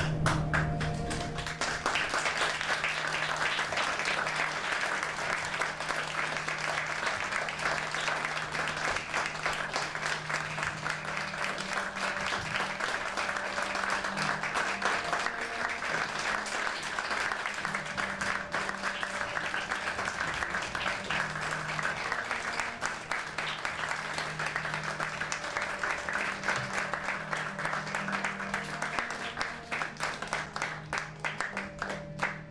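Theatre audience applauding, the clapping swelling within the first couple of seconds, with background music of low sustained notes underneath.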